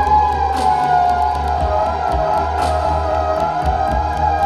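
Theremin holding a long wavering note that sinks slightly in pitch partway through. Underneath runs an electronic backing track with a pulsing low bass, fast ticking percussion and a swell of noise about every two seconds.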